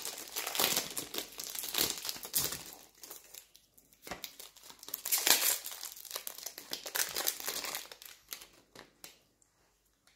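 Foil wrappers of Pokémon trading-card booster packs crinkling as they are handled and opened by hand. The crinkling comes in bursts, busiest at the start and again past the middle, and thins out near the end.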